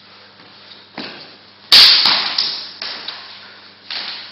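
Swords striking each other in a fencing bout: a few sharp clacks, the loudest and sharpest a hard crack about two seconds in, with weaker hits around one and three seconds.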